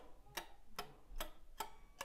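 Faint, evenly spaced clicks, about two and a half a second: a pick falling slowly across muted electric guitar strings, a muted-string sweep-picking exercise played in time with a metronome.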